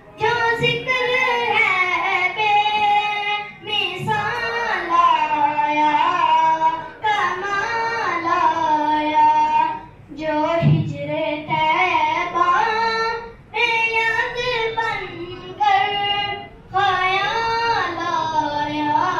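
A boy singing a naat, an unaccompanied devotional praise song, into a microphone in long held, ornamented phrases with short breaths between them.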